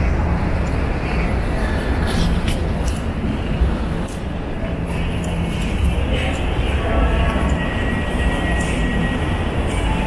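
Steady background ambience of a large indoor shopping mall: a continuous low rumble and hiss with faint distant voices.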